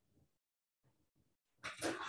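Near silence, then a noisy breath close to the microphone for the last half second or so, a hissy rush with no clear pitch.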